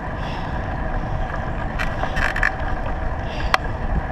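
Steady wind rush on the microphone of a moving bicycle, mixed with tyre noise on asphalt. A few light clicks come about two seconds in, and one sharp click comes near the end.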